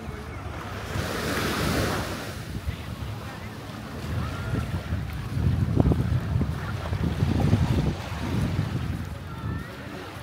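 Small waves washing up on a sandy beach, with a surge of surf hiss about a second in. Wind buffets the microphone in low rumbling gusts, loudest in the second half.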